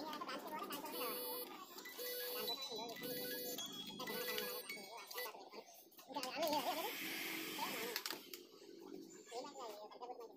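Background voices with music, including a short tone repeated about once a second for a few seconds. A louder noisy rush comes about two-thirds of the way in.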